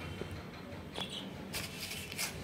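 Faint rustling and a few light clicks as a sheet of notebook paper is moved about on a desk.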